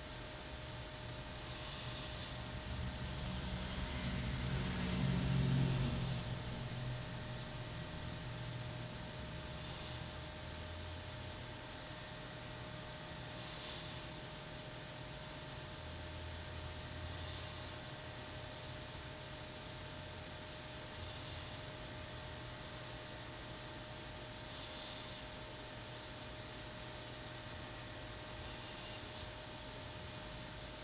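Quiet room tone: a steady hiss with a faint steady hum. A low rumble swells and fades about four to six seconds in.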